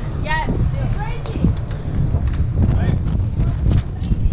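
Wind buffeting the microphone as a steady low rumble, with bits of people's voices nearby.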